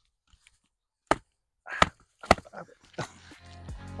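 Two sharp knocks close together about two seconds in, then background music fading in and growing louder over the last second.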